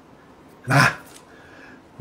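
Speech only: a man says one short, clipped word about two-thirds of a second in, against a quiet room.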